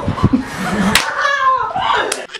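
A hand slap on a person: one sharp crack about halfway through, among voices.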